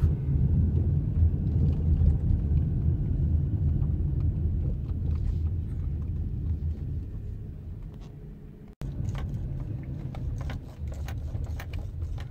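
Low, steady rumble of a car driving slowly, heard from inside the cabin, fading as the car eases off. After a sudden break about nine seconds in, the rumble is quieter, with scattered light clicks and knocks.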